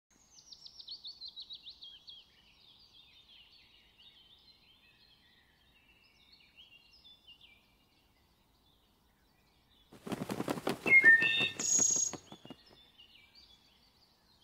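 Northern cardinal singing: a quick series of falling whistled notes in the first two seconds, then softer scattered chirps. About ten seconds in, a louder rapid rattling burst with a few short tones runs for about two and a half seconds.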